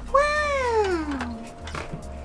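A single drawn-out vocal call, about a second long, that rises slightly and then glides steadily down in pitch.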